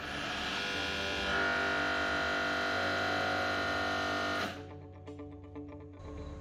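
Electro-hydraulic drive of a busbar bending machine running steadily while the copper bar is bent to 90 degrees, stopping abruptly about four and a half seconds in, over background guitar music.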